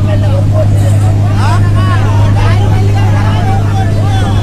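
Fishing boat's engine running steadily with a low drone, with several voices calling out over it on the water.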